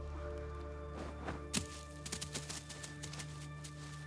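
Dark, sustained film-score drone, with a dull thud about a second and a half in as a severed head drops out of a burlap sack onto dry leaf litter, followed by light scattered crackles of leaves.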